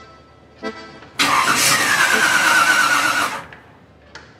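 A car engine starting and revving, loud for about two seconds from just past a second in, with short music notes before it.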